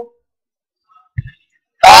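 A man's speaking voice breaks off, leaving near silence with one faint short thump a little past the middle, and his voice starts again loudly near the end.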